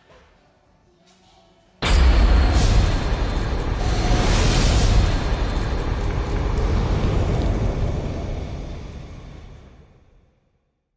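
Fire-and-explosion sound effect: a sudden boom about two seconds in, followed by a rumbling, whooshing fiery roar with a couple of brighter swells, fading away near the end.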